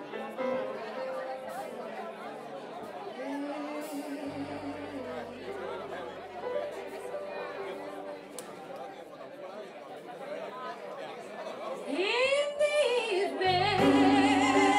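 Blues band playing quietly with held notes under audience chatter. About twelve seconds in, a woman's singing voice comes in with a rising and falling note, and the band grows much louder just before the end.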